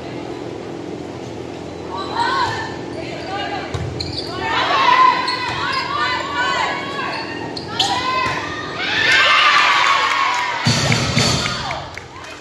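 Volleyball rally in a gym: players shouting and calling over a sharp thud or two of the ball being struck, with a louder burst of many voices about nine seconds in as the point ends. The sound echoes in the large hall.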